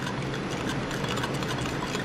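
A steady low background hum, with faint light clinks and scrapes of a metal spoon stirring liquid soft plastic in a glass measuring cup.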